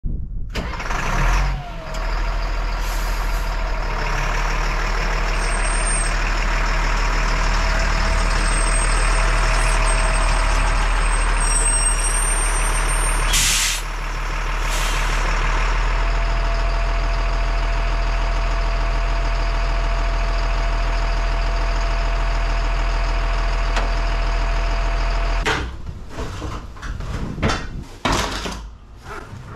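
Diesel engine of a 1998 Stewart & Stevenson M1079 military truck running as the truck pulls up, with a short hiss of air from the air brakes about halfway through. After that the engine idles steadily until the sound stops abruptly near the end.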